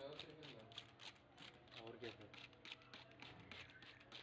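Faint rustling of a wet ringneck parakeet shaking and flapping its feathers after a bath, heard as a quick, uneven run of soft ticks. A steady low hum lies underneath.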